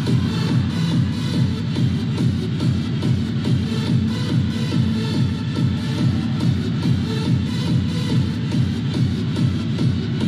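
Upbeat dance music with a steady, driving beat, the accompaniment for a majorette baton routine.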